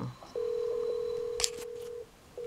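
Precedence ringback tone from an Asterisk phone switch's multi-level precedence and preemption (MLPP) setup, heard over the phone line. After a short gap a steady tone sounds for about a second and a half and then breaks off, in its 1.65 s on, 0.35 s off cadence, which marks a priority call ringing through. A sharp click comes near the end.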